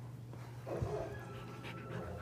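Dogs moving close to the camera on carpet, with a soft knock against the camera about a second in, over a steady low hum.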